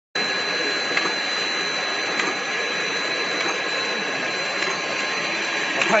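EPE foam fruit-net extrusion line running: a steady machine hiss and hum with a high, constant whine, broken by a few faint clicks.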